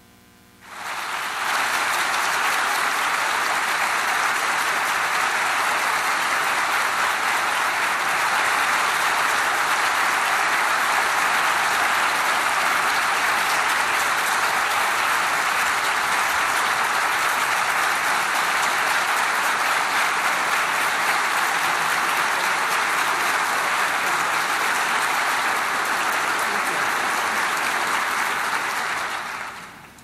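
Audience applauding steadily. The applause starts about a second in and dies away near the end.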